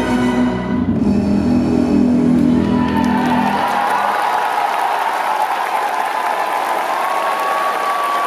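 Routine music ends about four seconds in, and an audience applauds through the rest.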